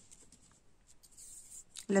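Faint rustling and light ticks of fingers touching and sliding a picture card on a table, then a woman starts speaking near the end.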